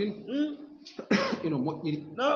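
A man clears his throat with a short, harsh cough about a second in, between stretches of his speaking voice.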